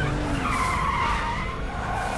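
Car tyres squealing in a long skid on dirt as SUVs brake hard to a stop, the squeal's pitch dipping and then rising again.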